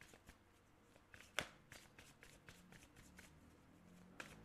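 A deck of oracle cards being shuffled by hand: faint, quick card flicks, with one sharper snap about a third of the way in.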